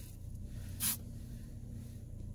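One short, sharp sniff about a second in, a person smelling air-freshener scent wafted toward her face, over a steady low rumble inside a car.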